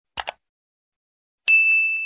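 Subscribe-button sound effect: two quick mouse clicks, then a single bright bell ding about a second and a half in that rings out and fades.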